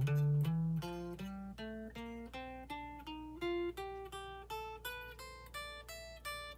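Clean electric guitar playing single alternate-picked notes, three per string at frets 8, 10 and 12, climbing string by string as a finger-stretching exercise. There are about three notes a second, rising steadily in pitch.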